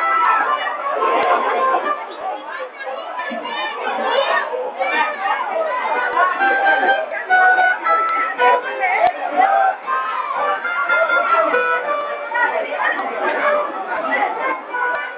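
Crowd of people chattering and calling out over samba music, many voices at once and loud.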